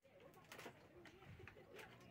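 Faint bird calls over near silence, with a few soft clicks.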